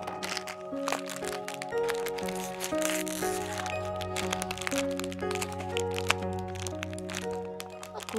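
Thin plastic wrapper crinkling and crackling as fingers tear open a fortune cookie packet, over steady background music.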